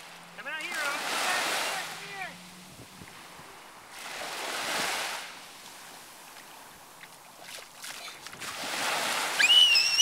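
Small ocean waves breaking and washing up the sand in three swells, about a second in, near the middle, and a louder one near the end. A voice is heard over the first, and a high-pitched squeal over the last.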